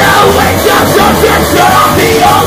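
Punk band playing loudly: electric guitar and drums driving on together, with shouted vocals over the top.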